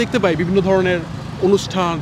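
Speech: a man talking in conversation.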